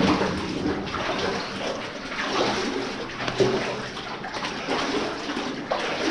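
Legs in chest waders wading through knee-deep water in a flooded mine tunnel, the water sloshing and splashing with each stride about once a second.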